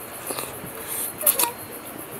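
Close-miked eating sounds of a person chewing a mouthful of rice and dried eel curry: wet chewing and lip smacks, with a cluster of louder, sharper smacks just past the middle.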